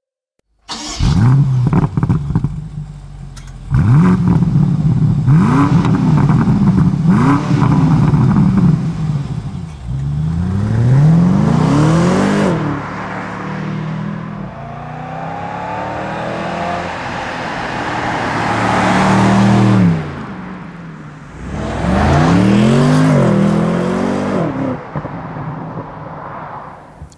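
BMW M850i Convertible's twin-turbo V8 accelerating hard, its engine note rising in pitch and dropping back at each upshift, over and over, after a moment's silence at the start.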